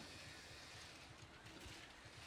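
Near silence: faint, steady background noise with no distinct events.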